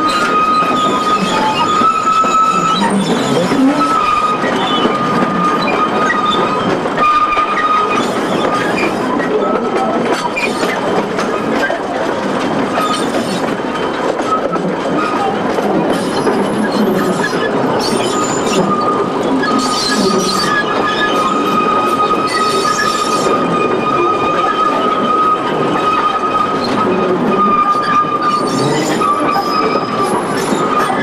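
Narrow-gauge train heard from an open passenger coach: wheel flanges squeal in a high, steady tone as the train rounds a curve, with brief breaks, over the continuous rumble and clatter of the wheels on the track.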